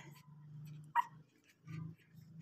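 A newborn puppy, eight days old, giving a short high whimper about a second in, with faint small squeaks around it.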